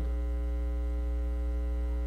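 Steady electrical mains hum with a buzzy ladder of overtones, unchanging throughout, typical of a ground-loop hum in a sound system's recording feed.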